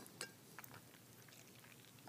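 Near silence, with a few faint clicks and small mouth sounds of a man sipping a drink through a straw from a metal tumbler.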